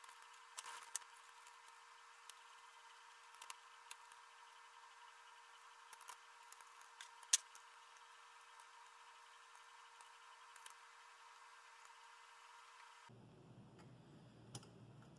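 Near silence with a few faint, sharp metallic clicks and taps from screws and a hex key being worked into an aluminium extrusion frame; the sharpest click comes about seven seconds in.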